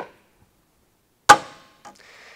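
A soft click, then about a second later one loud, sharp snap with a short ring: the boat's stern hardware being snapped shut, most likely the tension-hinged re-entry ladder cover closing.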